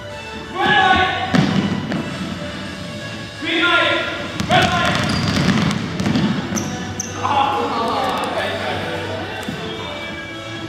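Basketballs bouncing on a hardwood gym floor, a scatter of sharp bounces as several children dribble, ringing in the large hall.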